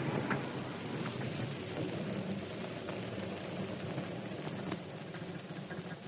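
Car engine running as a radio-drama sound effect under old-recording hiss, dropping a little in level about five seconds in.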